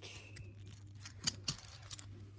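A few light clicks and handling noises of a small plastic toy train tender being turned over in the hand, over a faint steady low hum.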